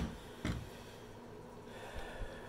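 A sharp click, then about half a second later a dull knock as a cordless reciprocating saw is set down on a countertop. After that there is only faint room tone.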